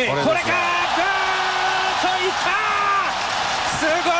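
A commentator's long, drawn-out shouted home-run call over a stadium crowd cheering loudly as the ball leaves the park.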